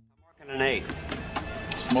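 Half a second of near silence, then a film soundtrack sets in: a voice over background music and bowling-alley noise, with several sharp clacks.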